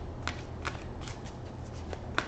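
Tarot cards being handled, giving a few light, crisp card ticks and flicks over a faint low hum.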